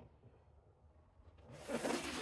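Quiet room tone, then about one and a half seconds in a short scraping rush as a large cardboard box is turned on a tile floor.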